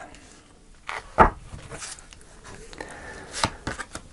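Tarot cards being handled and laid down on a cloth-covered table: a few soft taps and rustles, the loudest a thump just over a second in.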